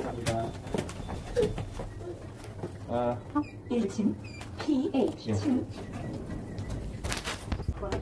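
Indistinct voices of people talking nearby, with a few sharp knocks and clicks.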